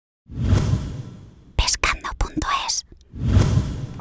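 Intro sound effects: a whoosh swells and fades, then a quick run of short, choppy sounds, then a second whoosh rises near the end.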